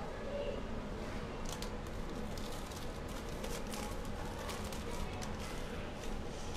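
Scattered light clicks and rustling from things being handled and moved about in a kitchen cupboard, over a steady low room hum.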